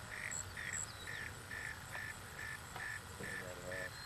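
Faint, regular chirping: short chirps repeating about two and a half times a second, with a faint voice near the end.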